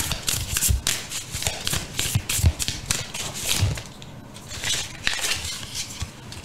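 Sacred Destiny Oracle card deck being shuffled by hand: a quick run of crisp, papery card flicks with a short pause about two thirds of the way through.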